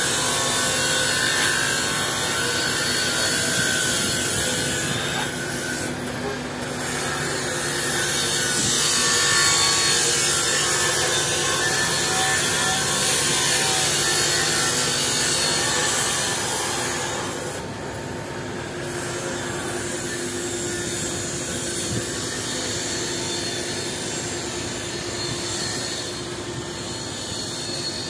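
Heavy diesel truck engines of concrete mixer and concrete pump trucks running steadily, with a broad hiss over them. The noise drops somewhat about two-thirds of the way through.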